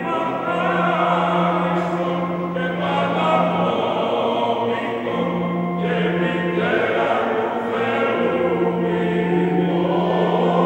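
Men's choir singing a sacred piece in harmony over a steady low held note, which breaks off twice and comes back.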